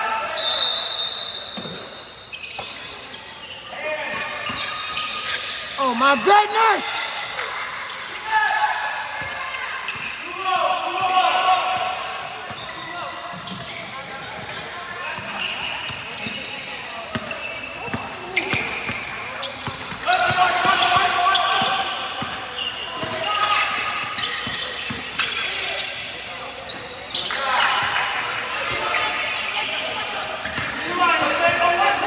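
Basketball bouncing on a hardwood gym floor during play, with sneaker squeaks and shouting voices echoing in the gym. A short whistle blast sounds about half a second in.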